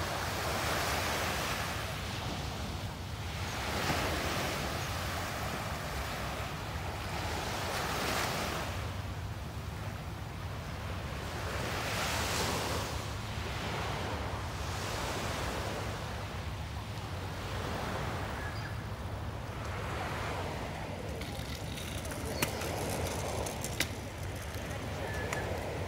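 Small waves washing onto a sandy beach, each wash swelling and fading every few seconds. Two sharp clicks near the end.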